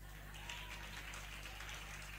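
Faint applause from an audience, with a low steady electrical hum underneath.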